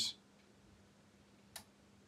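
Near silence over a faint, steady low hum, broken by one short, sharp click about one and a half seconds in.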